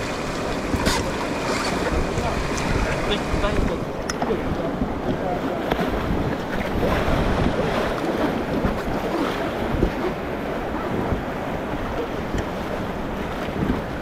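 Rushing river water around an inflatable raft, with wind buffeting the microphone and a few sharp splashes in the first few seconds.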